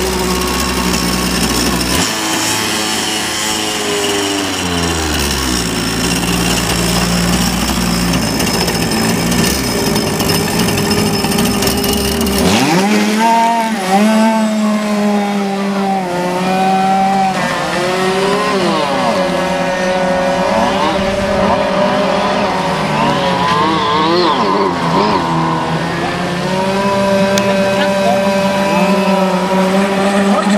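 Radio-controlled model speedboat engine buzzing: a steady note at first, then from about twelve seconds in repeatedly rising and falling in pitch as the boat throttles up and down racing across the water.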